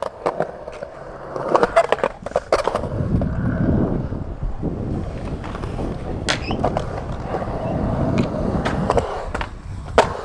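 Skateboard urethane wheels rolling on smooth concrete. There are a few sharp clacks of the board in the first three seconds, then a steady rolling rumble that lasts about six seconds, with occasional clacks.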